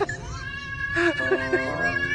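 A cat meowing in a few short rising-and-falling cries, bunched about a second in, over a steady high-pitched tone.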